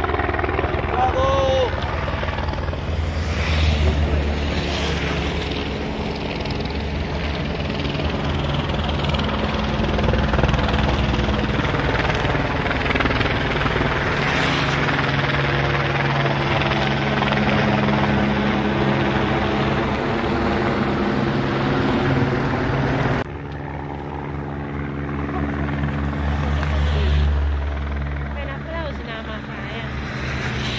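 Helicopter flying overhead, its rotor and engine a steady, continuous drone. It drops off suddenly about 23 seconds in, then swells again.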